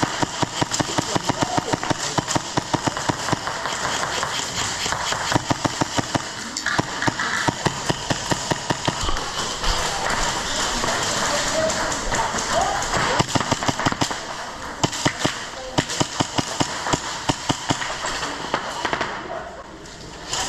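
Airsoft guns firing in the game, many sharp shots at irregular, often rapid spacing, over the continuous noise of the play hall. The shots thin out near the end.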